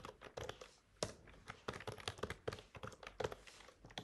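Typing on a computer keyboard: quick, irregular keystroke clicks, faint.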